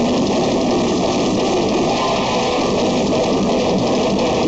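Metal band playing live: distorted electric guitars and bass over drums, loud and dense without a break, as picked up by a camera microphone in the club.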